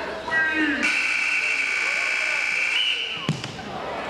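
Gymnasium scoreboard buzzer sounding one steady tone for about two seconds, starting about a second in, over voices from the crowd, signalling the end of a wrestling period. A single sharp thump follows just after it stops.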